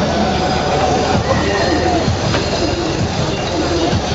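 Crowd noise of a large mass of cyclists riding together: a dense, steady mix of many voices and rolling bicycle noise with scattered squeals.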